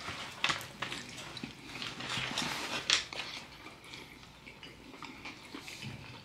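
A bite into a KFC Chizza (fried chicken fillet topped with cheese and pepperoni), then close-up chewing: irregular wet smacks and clicks, busiest in the first three seconds and quieter after.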